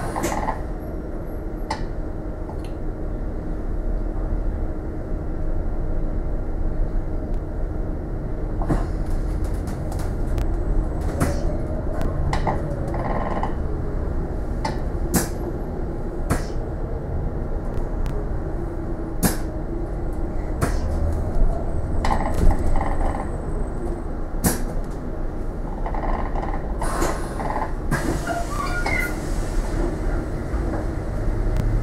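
Inside a moving bus: a steady low rumble of the drivetrain and road, with frequent short rattles and clicks from the body and fittings.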